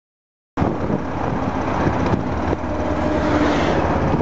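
Motorcycle riding along a road: a steady mix of engine and wind noise, starting abruptly about half a second in.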